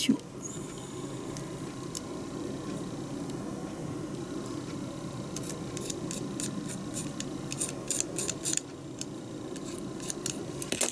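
Light clicks and taps of small plastic model-kit parts being handled and fitted between the fingers, a few at first, then a quick run of them in the second half, over a steady low background hum.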